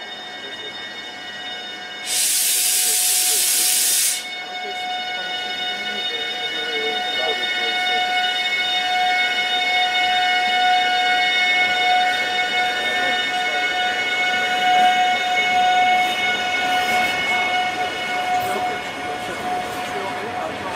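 A DRS Class 88 locomotive passing with a train of car-carrier wagons: a loud hiss lasting about two seconds near the start, then a steady, high whine from the passing train that swells as the wagons go by.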